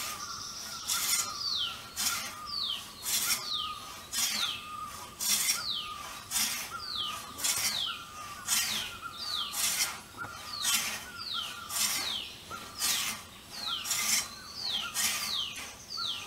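Two-man frame saw ripping a squared hardwood timber lengthwise, going at a steady pace of about two strokes a second, each stroke with a short falling squeal.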